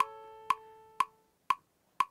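A metronome clicking steadily at about two ticks a second, alongside a piano note from an iPad keyboard app that dies away during the first second or so.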